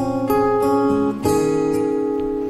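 Solo acoustic guitar playing the instrumental opening of a folk song: chords struck twice, about a second apart, each left ringing.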